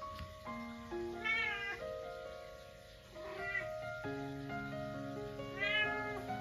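A munchkin cat meowing three times, each meow rising and then falling in pitch, over background music.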